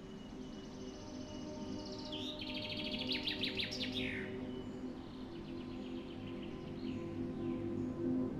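Songbird singing a fast, rattling trill of rapidly repeated notes about two seconds in, with a fainter trill a few seconds later. Underneath is a steady ambient music drone of held low tones that grows louder toward the end.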